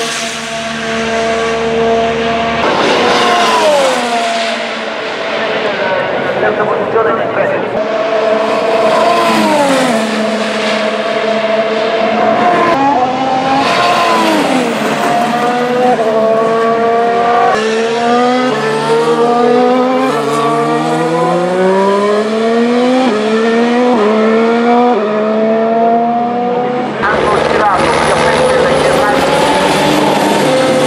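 2017 Red Bull RB13 Formula 1 car's Renault 1.6-litre turbocharged V6 hybrid engine at racing speed. In the first half its pitch drops several times as it brakes and downshifts; in the second half it climbs through a long series of upshifts as it accelerates away.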